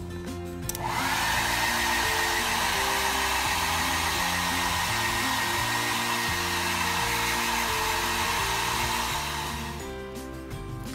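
Hair dryer switched on about a second in, its motor whine rising briefly and then running steadily as it dries a wet puppy; it fades out near the end. Background music plays underneath.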